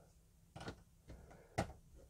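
Two faint, light knocks, about half a second and a second and a half in, as folding knives are handled and set down on a cutting mat.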